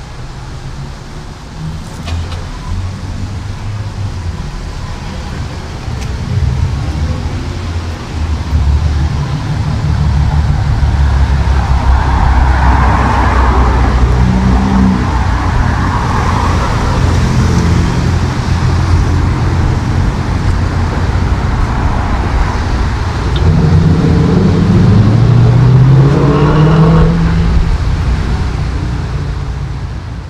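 Street traffic: car engines and tyres running on a city road, growing louder over the first several seconds, with one engine audibly accelerating, its pitch rising, near the end.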